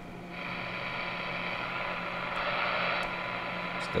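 Receiver static hissing steadily from the Super Star SS-158FB4 CB radio's speaker, setting in about a third of a second in, with a faint steady test tone buried in the noise. It is a very weak modulated test signal that the receiver still picks up during a sensitivity check.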